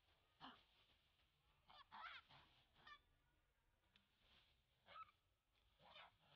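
Young long-tailed macaque screaming in about six short, high-pitched calls at irregular intervals, a distress call while a bigger monkey pins it down.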